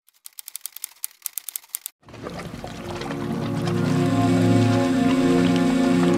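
A quick run of typing clicks for about two seconds, then music fades in and builds with sustained chords.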